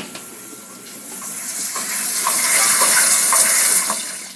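New GE dishwasher running water inside its tub, a rushing, splashing hiss that grows louder over the first two seconds and then holds. A sharp click comes at the very start.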